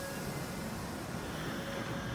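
Meitetsu electric train beginning to pull away from the platform: a low steady hum under an even hiss, with a faint thin tone appearing in the second half.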